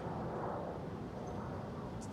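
Steady city street background noise: a low traffic hum that swells a little about half a second in.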